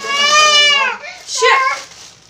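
A woman speaking close to the microphone with long drawn-out vowels: speech only.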